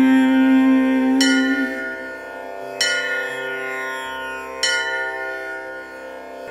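Instrumental interlude of Indian devotional music: a held note fades out in the first second and a half, then three struck bell tones ring out about a second and a half apart, each fading slowly over a soft steady drone.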